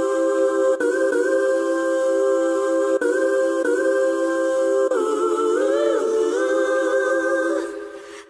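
Voices humming a held chord in harmony, in long sustained phrases with short breaks between them. The pitches move about five seconds in, then the chord settles and fades out near the end.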